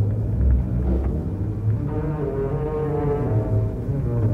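Orchestral music from a small opera orchestra: strong low sustained notes, joined about two seconds in by quieter, higher held notes.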